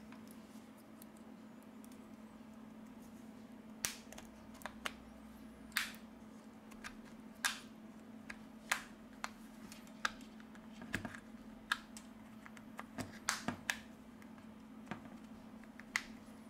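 Irregular small clicks and light scrapes as a thin plastic pry card is worked along the seam of a smartphone's back cover, popping it off its clips, with a few quick clusters of clicks; a faint steady hum runs underneath.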